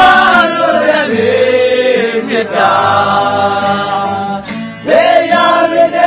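A group of men singing together in unison, holding long notes, with a brief breath pause near the end before the next phrase begins.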